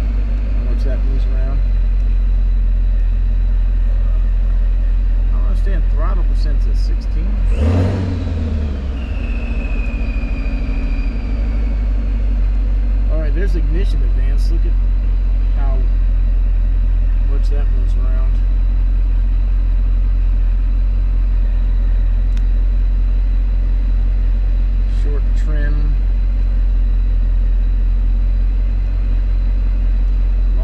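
Third-gen Camaro Z28's tuned-port-injected V8 idling steadily, with a brief loud noise about eight seconds in.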